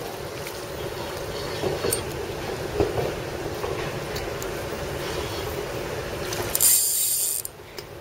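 Fishing reel being cranked steadily to retrieve a lure, with the reel's gears running the whole time. It stops briefly near the end after a short loud hiss.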